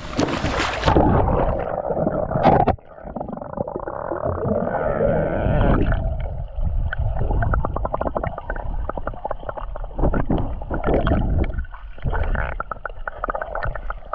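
Camera microphone lowered into a spring-fed pool: water running at the surface, then muffled as it goes under about a second in. Underwater gurgling and a steady crackle of fine ticks follow, with the high sounds cut off.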